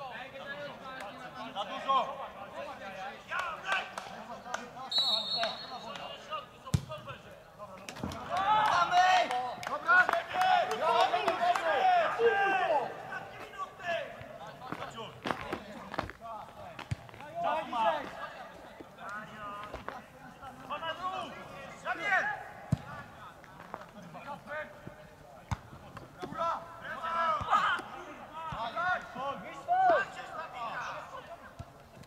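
Men's voices shouting and calling across an outdoor football pitch, loudest in a long stretch of shouting about eight to thirteen seconds in, with a few sharp thuds of the ball being kicked.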